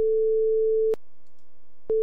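AHI 'Play a test sound' tone from the AmigaOS 4.1 sound preferences, played through the EMU10kx sound-card driver. A steady, single pure beep lasts about a second, with a click where it starts and stops. It sounds again near the end, showing the sound output works.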